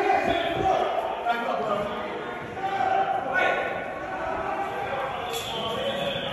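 Men shouting in a large marble hall, with heavy footsteps thudding on the stone floor in the first second as people run.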